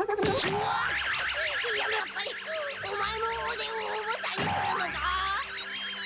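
Cartoon soundtrack of a crowd of birds chirping rapidly and all at once, many short high chirps, over soft background music.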